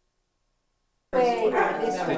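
Dead silence at a camcorder recording cut, then sound cuts back in abruptly about a second in.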